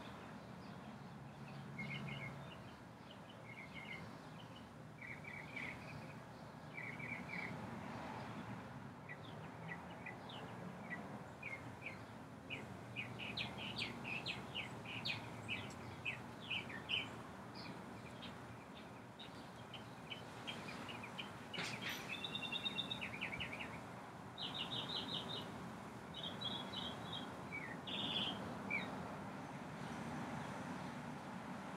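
Small birds chirping and singing: scattered short calls at first, then busier runs of rapid chirps and trills from about halfway on. Underneath is a faint, steady low background hum.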